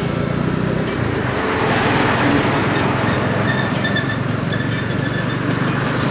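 Motorcycle-towed tuk-tuk driving along a road, heard from its open passenger carriage: a steady low engine hum under continuous road and wind noise.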